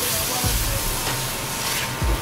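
Diced onions sizzling steadily in sesame oil in a stainless steel pot, stirred with a wooden spoon.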